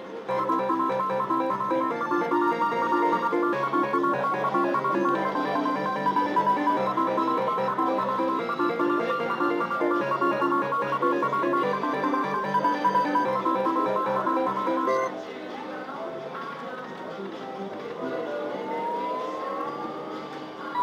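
Gold Maker video slot machine playing its electronic win music while a bonus win tallies up, loud and busy for about fifteen seconds. It then drops to a softer tune, with a rising tone near the end as the next free spin begins.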